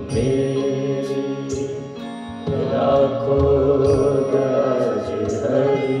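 Devotional bhajan music: a harmonium accompanying sung, chant-like vocals, with a few sharp percussion strikes.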